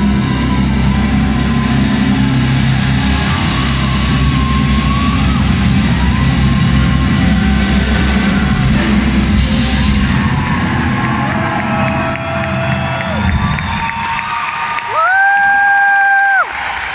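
Live rock band and string orchestra playing the closing bars of a song, the full sound dropping away about ten seconds in. The audience then cheers and whoops, with one loud held whoop near the end.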